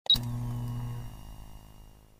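Short intro sound effect: a sharp bright hit with a brief high ping, then a low sustained tone that fades away over about two seconds.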